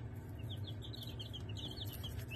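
Five-day-old chicks peeping: a quick run of short, high, falling peeps, many in a row.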